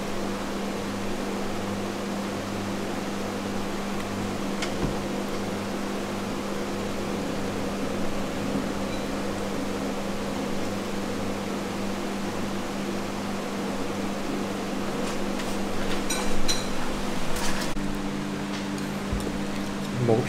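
Steady low mechanical hum, like a fan or refrigeration unit, with a few faint clicks and knocks in between.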